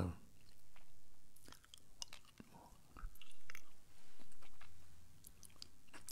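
Mouth noises close to a handheld microphone: scattered soft lip and tongue clicks and three quiet breaths as a man pauses before speaking.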